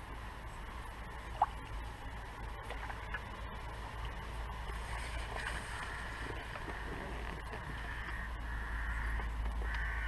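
Steady low rumble of wind on the microphone over faint outdoor background noise, with one short sharp tick about one and a half seconds in.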